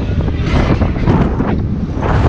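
Wind buffeting a GoPro Hero5's microphone as it whirls through the air on a fast-spinning fairground thrill ride: a loud, low rushing noise that swells and dips in gusts.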